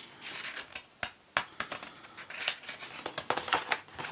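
Pages of a thick-papered colouring book being handled and turned: soft paper rustling with a string of sharp clicks and flaps, most of them in the last second and a half.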